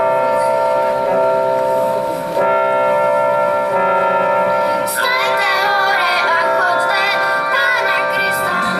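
Children's choir singing to instrumental accompaniment: steady held notes at first, then more lively singing with wavering pitch from about five seconds in.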